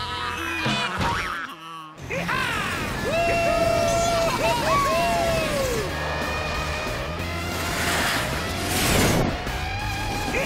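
Cartoon soundtrack of background music with sound effects, including sliding pitched cartoon sounds and a swelling rocket whoosh near the end.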